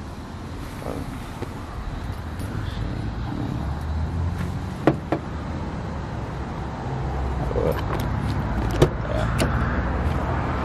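Low rumble of a car running, growing slowly louder, with a few sharp clicks about five seconds in and one more near the end.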